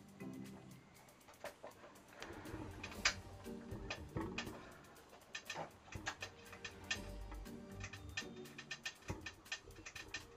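Quiet background music with irregular small clicks and ticks from a small screwdriver driving a screw into the plastic wheel hub of a die-cast model car; the clicks come thickest in the second half.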